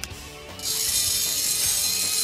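Robot servo motor running at high speed, turning a jack screw that slides the leadout guide along its slot. It makes a steady, high-pitched mechanical whir that starts about half a second in.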